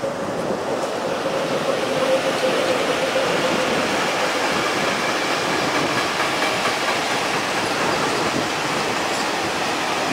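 A freight train rolling past on the adjacent track: the locomotive and then a line of open freight wagons, a steady rush and rumble of wheels on rail that builds over the first couple of seconds and then holds.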